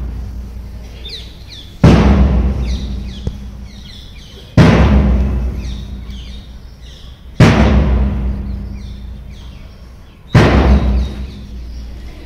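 A big drum struck once every three seconds or so, keeping the count for a mass PT drill; four heavy strokes, each ringing out and fading slowly. Birds chirp faintly between the beats.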